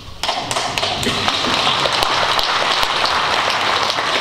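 A large audience applauding: many hands clapping, breaking out suddenly just after the start and then carrying on at a steady level.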